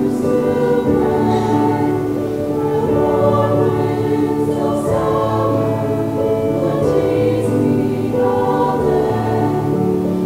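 A small mixed choir of young men and women singing in parts, holding long notes that shift every second or so.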